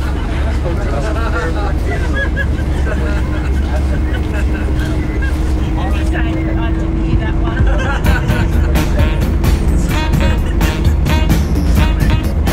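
Steady low engine and road rumble inside a moving tour coach, with faint passenger voices. About eight seconds in, music with a steady beat starts.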